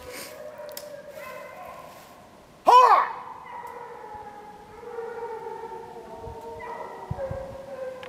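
Distant pack of Penn-Marydel foxhounds giving tongue on a fox's line, several long drawn-out cries overlapping in chorus. A single loud, close call with a quick rise and fall cuts in about three seconds in.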